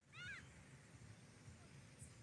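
Near silence with a faint low rumble, broken near the start by a short, quick run of faint high-pitched chirps from an animal.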